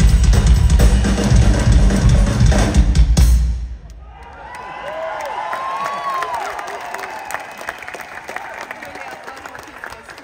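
Live rock drum kit played loud with heavy bass drum, stopping suddenly about three and a half seconds in. A crowd then cheers and whistles, dying down.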